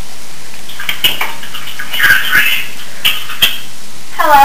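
Steady recording hiss with a few short, faint rustling and scratching sounds, about a second apart.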